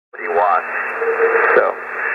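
A man's voice in an amateur radio single-sideband contact on the 20-metre band, received on a homebrew HF receiver: thin, narrow-band audio over steady band hiss.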